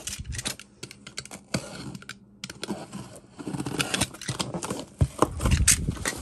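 Utility knife slicing the packing tape on a cardboard box, a run of small clicks and scratches. Near the end, louder scraping and rubbing as the cardboard flaps are pulled open.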